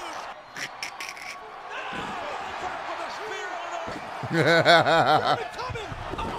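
A man laughing heartily, a quick run of repeated "ha" bursts in the second half. Near the start there are a few short sharp thuds over a low background, the sound of the wrestling video playing.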